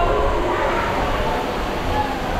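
Steady rushing rumble of a rider sliding down an enclosed water slide tube, echoing inside the tube, with faint tones wavering in pitch over it.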